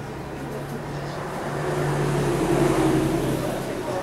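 A low, steady, engine-like hum that grows louder through the middle and eases off near the end, with faint voices behind it.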